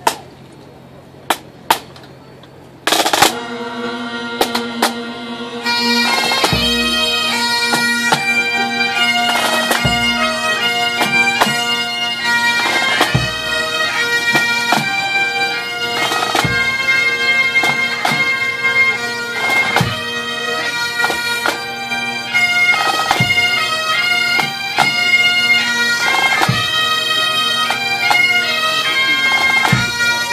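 Pipe band of Great Highland bagpipes and drums striking in to play a slow air: a few sharp clicks over a quiet start, then the drones sound about three seconds in and the chanters take up the melody a few seconds later. A deep bass drum beat falls slowly, about once every three seconds.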